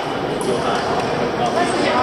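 Busy sports-hall ambience, with indistinct chatter from many people echoing off the walls. Occasional short sharp taps of badminton rackets hitting shuttlecocks come through it.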